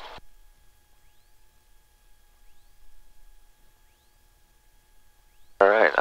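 A quiet stretch of the cockpit headset intercom feed: only a faint steady electronic tone, with a faint rising chirp about every one and a half seconds.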